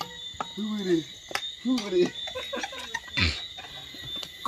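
People talking over a steady background chorus of crickets.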